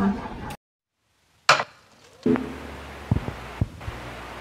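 A woman's short laugh, then sudden dead silence. About a second and a half in comes one sharp knock, and later two softer knocks over faint room noise.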